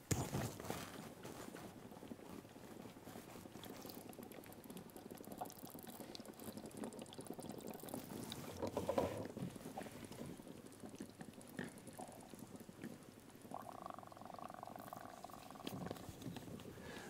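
Faint bubbling and gurgling of exhaled breath blown through a tube into a water-filled tank of plastic beads; the gas collects under the lid and pushes the water down.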